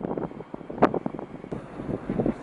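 Wind buffeting the microphone outdoors: an uneven, gusty rush with a sharp click just under a second in.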